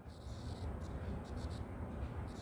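Faint scratching of a stylus writing on a tablet screen, in a few short, irregular strokes, over a low steady hum.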